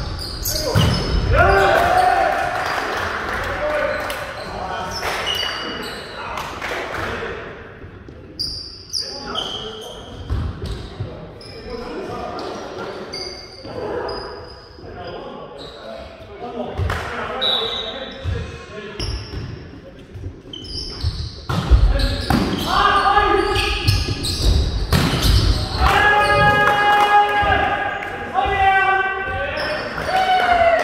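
Volleyball rally in a large gym: repeated sharp ball hits and bounces on the court, with players calling out to each other. From about three-quarters of the way through, the players shout louder and more continuously as the rally ends.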